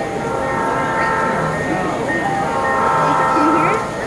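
A model train's sound-unit horn blowing two long, steady chime blasts, over the murmur of people talking.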